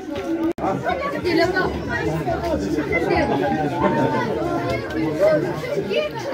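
Several people talking at once, their voices overlapping in chatter, with a brief break in the sound about half a second in.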